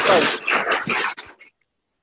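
Loud hiss-like noise from a participant's open microphone on a video call, with a voice in it, cutting off about a second and a half in.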